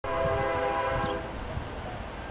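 Air horn of a CP ES44AC diesel locomotive leading a freight train: one held blast that fades out a little over a second in, sounded as the train nears a level crossing.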